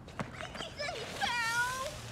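A child's high-pitched squeal as he slips and falls on the ice: a few short wavering cries, then one long held note that drops and levels off. A short knock comes near the start.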